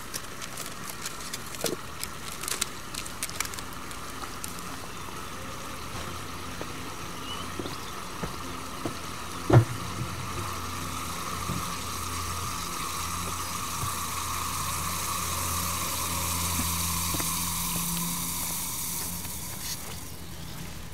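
Liquid nitrogen boiling in a glass beaker: a steady bubbling hiss, with scattered crackles and ticks in the first few seconds and one sharp knock about halfway through.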